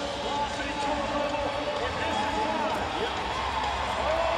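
Arena crowd noise with indistinct shouting voices during a bull ride.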